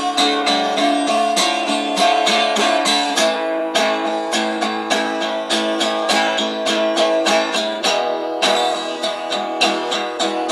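Acoustic guitar strummed in a steady, even rhythm with no singing, a recorded song playing back from a cassette in a Sony Walkman.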